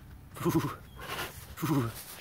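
White tiger giving two short, mooing vocal calls as it comes up close.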